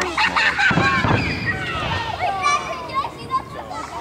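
A crowd of many voices, children among them, talking and calling out over one another, with a dull low boom about a second in.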